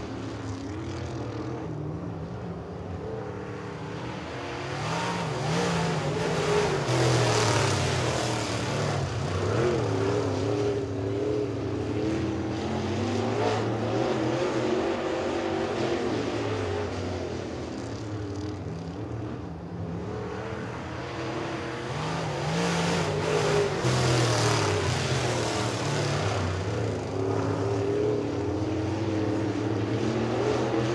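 Dirt late model race cars' V8 engines running at racing speed, the sound swelling loud as the field passes about seven seconds in and again about twenty-three seconds in, fading in between as the cars go round the far side.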